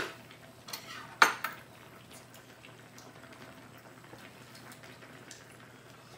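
Eating utensils clinking against bowls and dishes at a meal: a sharp clink right at the start and a louder one about a second and a quarter in, then only faint small clicks.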